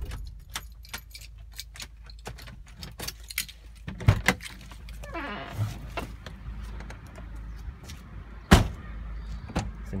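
Car keys jangling with a string of small clicks and knocks as a person climbs out of a 1997 Honda Accord. Two sharp clunks from the door, the loudest about eight and a half seconds in.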